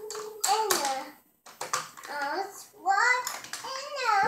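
A toddler babbling: a string of short, high-pitched wordless voice sounds with rising and falling pitch.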